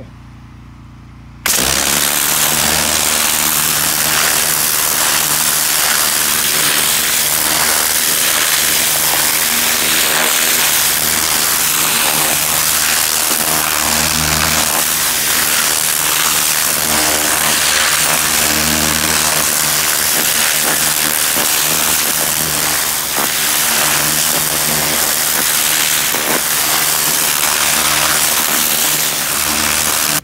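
High-pressure water jet blasting into garden soil, loosening the dirt and washing out weeds, with an engine running steadily underneath. It starts suddenly about a second and a half in and keeps on loud and even.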